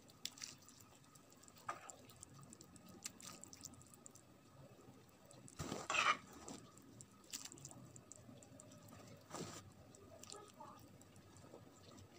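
Faint wet plops and squelches as a stewed beetroot mixture is added to a pot of borscht broth and stirred, with a few small clicks; the loudest splash comes about six seconds in.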